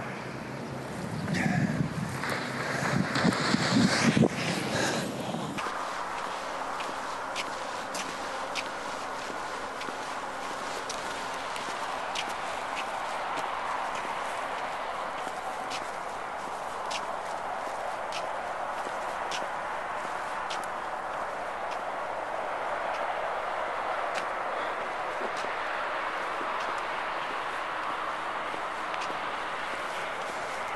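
Wind buffeting the phone's microphone for the first five seconds or so, then an abrupt change to a steady hiss of background noise with faint, light ticks every half-second to a second.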